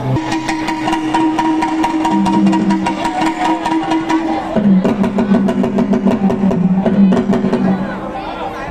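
Live band on stage: a sustained keyboard chord that changes about halfway through, over a quick, steady percussion pattern.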